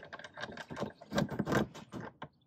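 Aluminium-framed awning window on a vintage camper being pulled shut, its metal sash and frame rattling and clicking, loudest a little over a second in.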